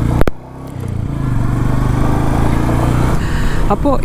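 Royal Enfield Meteor 350's single-cylinder engine running on the move, with wind and road noise. A sharp click about a quarter second in, then the sound dips and builds back up over the next second and holds steady.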